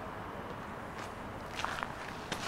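Footsteps on stone paving slabs, a few sharp steps from about halfway through, over a steady outdoor background noise.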